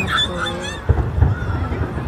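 Crowd voices, with a pitched call or exclamation in the first second, over the low booming of fireworks bursting; a sharper boom comes about a second in.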